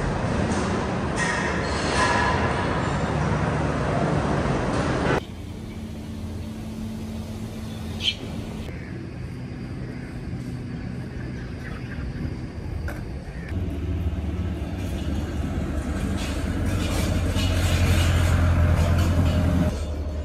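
Steady mechanical background noise that changes abruptly several times, with a louder low hum in the last few seconds.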